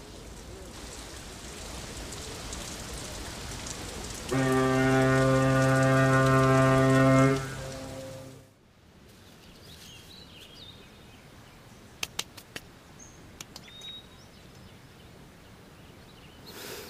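Steady rain falling, then about four seconds in a deep, steady horn blast lasting about three seconds: a ship's horn sounding for departure. Later comes quieter outdoor ambience with a few sharp clicks.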